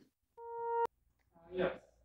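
A short electronic beep: a steady mid-pitched tone that swells for about half a second and cuts off suddenly with a click. A brief vocal sound follows about a second later.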